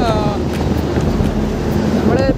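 Steady wind rush on the microphone of a camera carried on a moving bicycle, mixed with the engine and tyres of a heavy goods truck passing close alongside on the highway.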